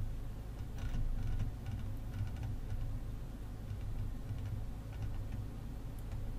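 Faint ticking of a computer mouse scroll wheel in short irregular runs as a web page is scrolled, over a steady low hum.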